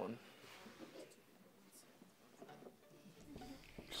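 Quiet room tone with faint, indistinct voices in the background.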